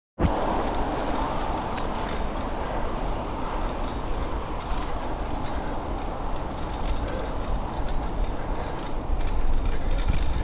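Steady riding noise from a single-speed bicycle: tyres rolling on pavement and wind on the microphone, with a low rumble and a few small clicks and rattles from the bike.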